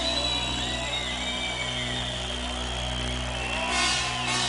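Live band playing a quiet, sustained instrumental passage: held low notes and chords under a high tone that slowly slides up and down, with no vocals. A short burst of hiss comes near the end.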